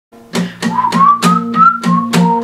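Acoustic guitar strummed in a steady rhythm, about three strums a second, with a whistled melody line gliding slightly upward over it.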